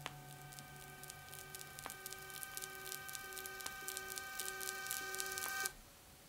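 Experimental turntable music: several steady held tones over a lower tone that pulses on and off, with vinyl crackle and clicks growing denser, all cut off abruptly near the end.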